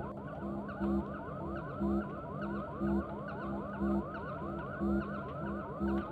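Looped electronic sci-fi control-room ambience: a low throb pulsing about once a second under blinking tones and rapid rising warbles, several a second, all repeating without change.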